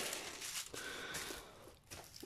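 Faint rustling of the clear plastic protective film being handled and smoothed over a diamond painting canvas, fading away toward near silence.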